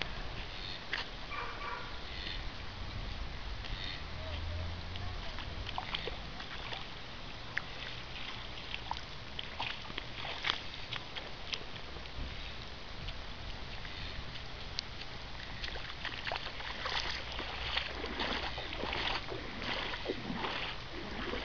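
Floodwater sloshing and splashing, with many short knocks and rustles of the camera being handled.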